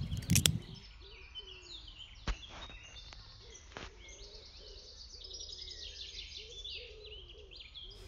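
Woodland birds singing in quick high chirps, with a few sharp wooden knocks as cut elder-wood beads are handled and set down on a tree stump: a cluster right at the start, then single knocks a couple of seconds in and near the middle.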